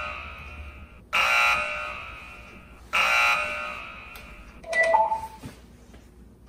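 Electric alarm buzzer sounding in repeated blasts about two seconds apart, each coming on loud and fading away, followed by a short higher blip about five seconds in. The buzzer is the alert for an incoming broadcast.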